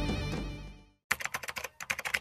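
Background music fades out over the first second. After a brief silence comes a fast run of sharp clicks, more than ten a second.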